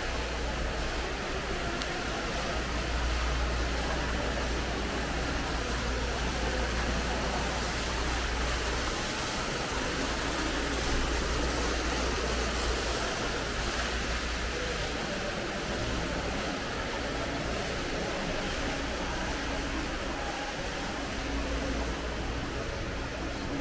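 Steady rushing noise with a deep low rumble underneath, unchanging throughout, without distinct events.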